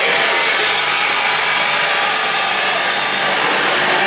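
Live rock band playing loud, distorted music, a dense, steady wall of sound with no breaks.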